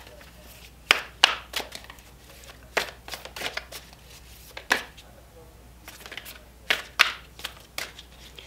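A deck of oracle cards shuffled by hand, cards slapping together in a series of sharp, irregularly spaced snaps, about nine in all.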